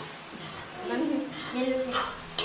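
A person's voice vocalizing briefly, with no clear words, over a faint steady low hum.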